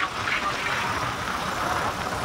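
Road and wind noise of a moving vehicle travelling along a highway, a steady rushing noise.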